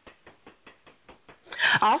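A fast train of faint clicks or taps, about seven a second, then a voice starts speaking about one and a half seconds in.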